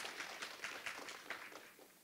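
Scattered audience applause, thinning out and stopping near the end.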